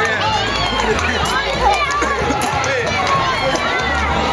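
Many voices talking and calling out at once: a street crowd, with a low rumble coming and going underneath.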